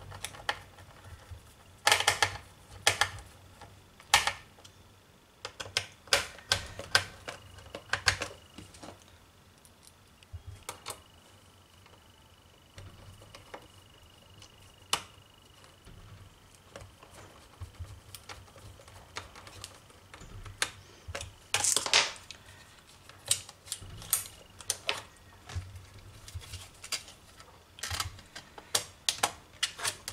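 Irregular sharp clicks and taps of a small screwdriver and screws working against an SSD's mounting bracket and a laptop's plastic drive bay as the drive's screws are fastened, with louder clusters of clicks about two seconds in and again about twenty-two seconds in.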